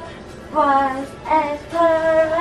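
A song with a high female voice singing three held notes over backing music.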